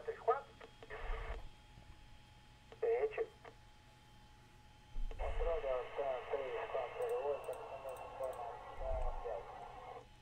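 Recorded air traffic control radio transmissions: thin, narrow-band voices in two short calls, then a longer transmission from about five seconds in, over a faint steady tone.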